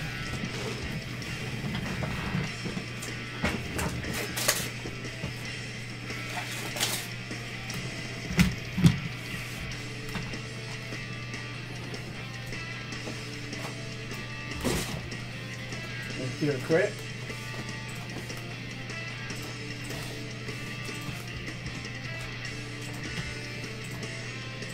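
Low background music over a steady hum, with a few scattered sharp clicks and knocks.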